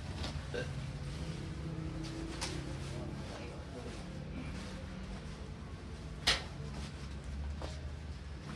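Used clothes being handled and held up out of a pile, over a steady low hum, with one sharp click about six seconds in.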